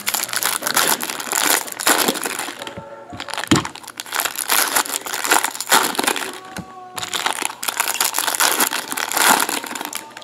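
Foil wrappers of 2015 Bowman Chrome trading-card packs crinkling and crackling as they are handled and opened by hand, in bursts with brief pauses.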